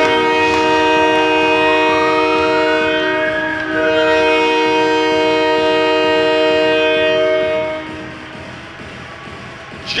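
Arena goal horn sounding a loud, steady chord of several tones, like a train horn, for about eight seconds after a home-team goal, then cutting off. A rising glide sweeps up under it in the first few seconds.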